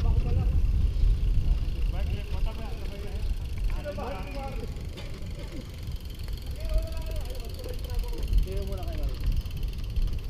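Wind buffeting the microphone of a camera riding on a moving road bicycle, a steady low rumble. Faint talk from nearby riders comes through now and then.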